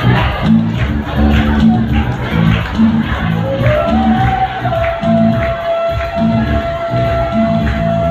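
A live church worship band and choir performing a hymn, with a steady bass-heavy beat. About halfway through, one high note slides up and is held to the end.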